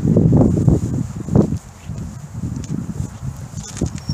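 Footsteps on asphalt with a low rumble of wind and handling on the microphone, loudest in the first second and a half, with a sharp knock about a second and a half in.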